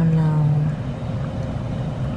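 A person's voice holding one short note, its pitch dipping at the start, then a steady low rumble.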